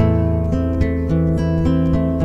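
Solo acoustic guitar played fingerstyle: a melody picked over a steady, repeating bass line, with a new chord struck at the start and notes left ringing.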